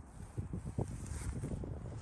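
Wind buffeting the microphone: an uneven low rumble with irregular gusts.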